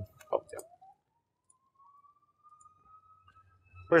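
A few short computer-mouse clicks in the first half second as a software menu item is chosen, then a near-silent stretch with a faint thin tone slowly rising in pitch.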